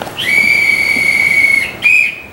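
A railway staff member's hand whistle blown on the station platform: one long steady high-pitched blast, then a short blast near the end.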